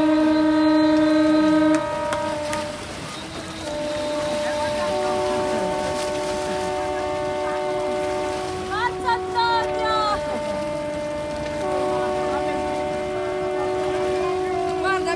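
Several boat horns sounding long, overlapping blasts at different pitches, each held for a few seconds, the loudest in the first two seconds. Short high chirping calls come through about nine seconds in.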